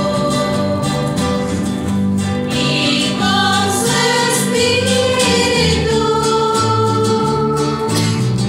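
A small group of women's voices singing a hymn together, with acoustic guitar accompaniment.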